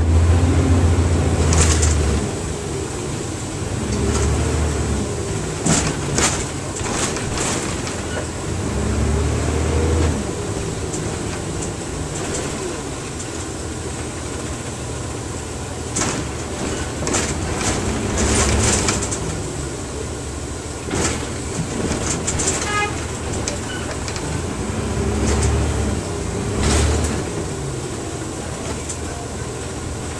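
Inside a 1999 NovaBus RTS transit bus on the move: the engine's pitch rises and falls several times as the bus pulls away and changes speed, with deep rumbles now and then and frequent sharp rattles and clatters from the body and fittings.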